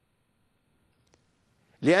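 Near silence in a pause of a man's talk, broken by one faint click about a second in; the man starts speaking Arabic again just before the end.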